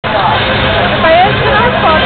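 Voices talking over the steady din of a crowded arena.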